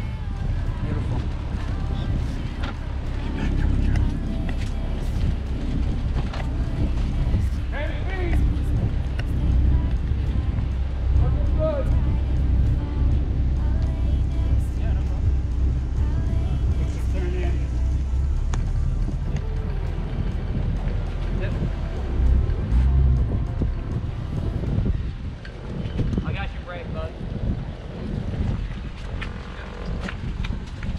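Grand Banks 36's single inboard engine running low and steady while the boat manoeuvres astern into a slip, with gusty wind buffeting the microphone.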